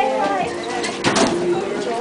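Students chattering in a crowded school hallway, many voices overlapping, with a couple of sharp knocks about a second in.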